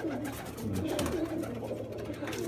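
A loft full of domestic pigeons cooing, several birds at once, with low wavering coos overlapping. There is a short click about a second in.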